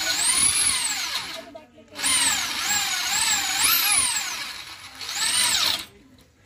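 Corded electric drill spinning a steel wire inside a motorcycle exhaust header pipe to scour out carbon. Its whine rises and falls in pitch as the speed changes, and it runs in three spells, stopping briefly about a second and a half in and again just before the end.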